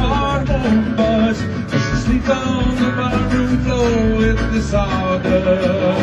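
Live band music: a song played by a full band, dense and steady throughout.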